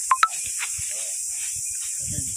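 A steady, high-pitched drone of insects. Two short, sharp clicks come right at the start, with faint small sounds after them.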